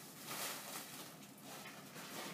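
Soft rustling and crinkling of packaging as plastic bags of malt and the cardboard box are handled.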